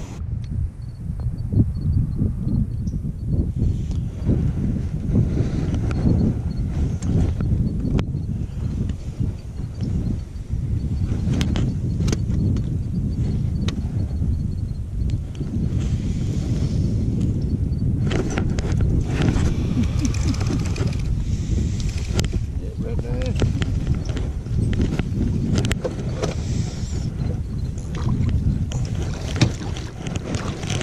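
Wind buffeting the microphone in a steady, uneven low rumble, with scattered small clicks and muffled voices.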